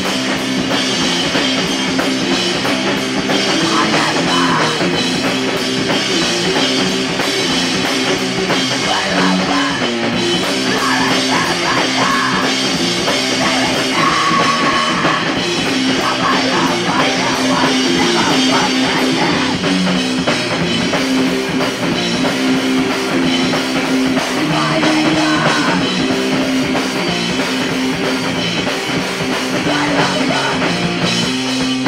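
Live rock band playing loudly: an electric guitar riff over a drum kit, with no break in the playing.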